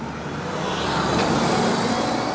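City bus pulling away from the kerb: engine and tyre noise swelling over the first second as it drives off, then holding steady.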